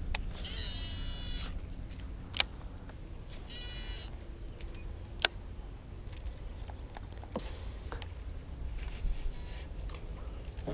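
Baitcasting reel being cranked in two short bursts during a lure retrieve, each a brief whirring whine, with two sharp clicks in between and a low steady hum underneath.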